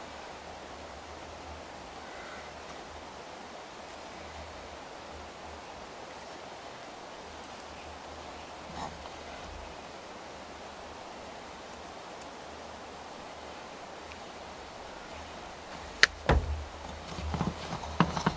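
Hands working a small-engine recoil starter housing and its pull rope on a plastic truck-bed liner: a faint steady background hiss for most of the time, then near the end one sharp knock followed by a few lighter clacks as the parts are handled.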